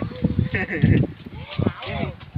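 Several people's voices talking and calling out, with one drawn-out vocal sound at the start and a few short rising-and-falling calls near the end.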